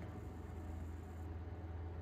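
Quiet room tone with a steady low hum and faint hiss.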